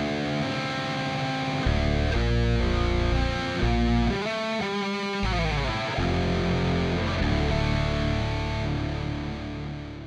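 Jet JS 400 electric guitar with ceramic humbuckers played through a very aggressive, heavily distorted tone in a full metal mix. It plays riffs with a falling run in the middle, then fades out near the end.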